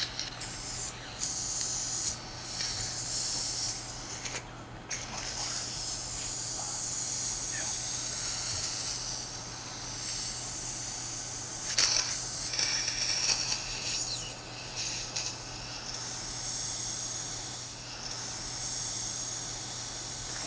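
Surgical suction aspirator hissing through a straight suction tip in the nose, clearing blood and mucus after sinus balloon dilation. The hiss rises and falls and cuts out briefly a couple of times as the tip moves.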